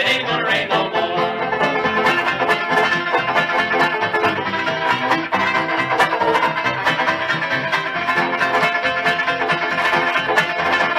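Instrumental break on a 1937 78 rpm shellac record by a string band, with fiddle, tenor banjo, guitar, piano and string bass playing between sung verses.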